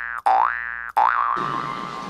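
Cartoon 'boing' sound effect repeated in quick succession: rising springy glides about two-thirds of a second apart, the last one trailing off in a wobble that fades. From about a second and a half in, a low background hubbub of the mall comes up.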